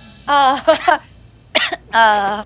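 A woman's voice making a few short, pitched throat-clearing sounds in quick succession, like an affected "ahem".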